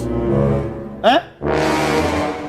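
Low, brass-like horn sound effect held steady for about a second, then a man's short "Eh?", then the horn tone starting again about a second and a half in.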